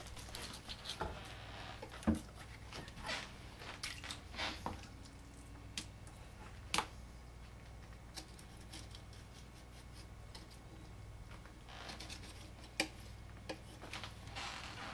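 Knife cutting the rib cage and belly meat out of a sucker fillet on a wooden cutting board: scattered soft clicks and snips as the blade goes through the rib bones, with wet handling of the fish and a quieter stretch past the middle.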